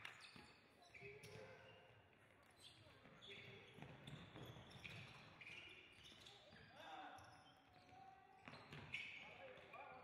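Faint sounds of an indoor futsal game in a sports hall: shoes squeaking on the court floor, the ball being struck, and players and coaches shouting now and then.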